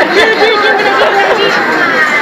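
A voice chanting a short sing-song syllable over and over, about five times a second, stopping about one and a half seconds in, over people chattering.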